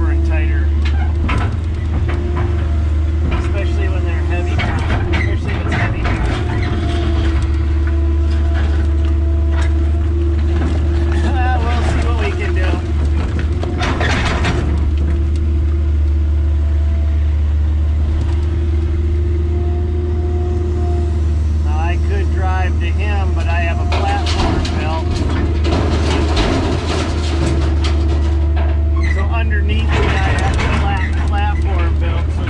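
An old Kobelco excavator heard from inside the cab: its diesel engine drones steadily under load while a hydraulic whine comes and goes as the boom and bucket move. The bucket clanks and scrapes in broken concrete rubble, with the loudest knock about fourteen seconds in.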